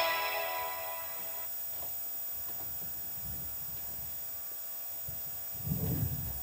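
Trailer music from a VHS tape fading out over about the first second, then a faint low hum with soft low rumbles between trailers, and a short low thump near the end.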